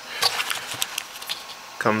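Hands handling small accessory cables in plastic packaging: light crinkling and scattered clicks of plastic connectors, stopping about a second and a half in.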